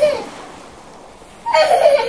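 A young child's voice: a short call at the start, then a loud, high-pitched squeal about one and a half seconds in.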